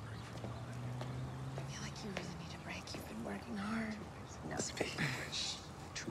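Hushed, whispered voices talking, with hissing 's' sounds near the end, over a low steady hum that lasts the first couple of seconds.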